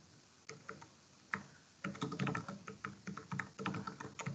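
Typing on a computer keyboard: a few separate keystrokes, then a quick run of keystrokes from about two seconds in.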